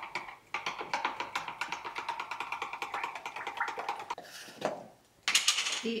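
A wooden stirring stick tapping and scraping in rapid, even strokes against the inside of a plastic measuring jug, dissolving sodium carbonate into a mallow-flower infusion for a homemade film developer. The stirring stops abruptly about four seconds in, followed by two short noises.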